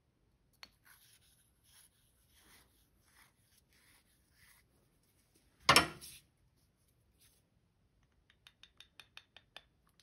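A glue-coated brass pen tube being twisted and pushed into the drilled hole of a segmented wood pen blank: faint scraping and rubbing, one sharp knock about six seconds in, then a quick run of light ticks near the end.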